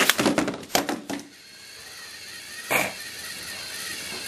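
Plastic TrackMaster toy engines clattering as Thomas crashes into Stanley and knocks him off the toy tree track piece: a quick series of knocks and rattles in the first second, then one more short knock about three seconds in.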